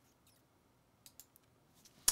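Near silence: room tone, with two faint clicks in quick succession about a second in.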